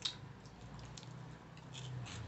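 Chewing a crisp chocolate-filled Ovaltine snack: a sharp crunch at the start, then a few faint crunching clicks, over a low steady hum.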